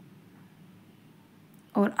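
Quiet room tone with a faint low hum and no distinct handling sounds, then a woman starts speaking near the end.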